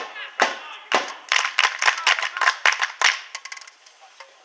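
Hands clapping close by: a run of sharp claps, several a second, that thins out and stops a little after three seconds in.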